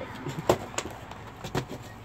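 Handling noises as things are moved about in a backpack: a few short knocks and rustles, the loudest about half a second in.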